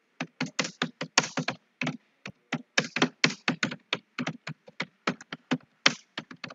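Typing on a computer keyboard: a quick, irregular run of keystrokes, about five a second, with no pause.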